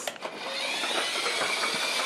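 Small electric motor of a remote-control toy whirring as it drives, a steady high whine that sets in about half a second in.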